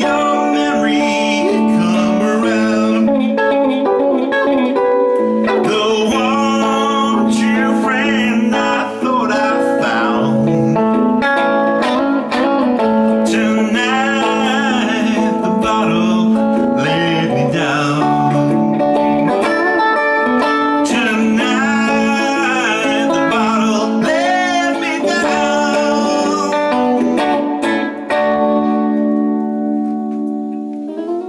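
Electric guitar played solo between verses, with many bent notes over a steady low sustained note. Near the end the playing stops and the last notes ring out and fade.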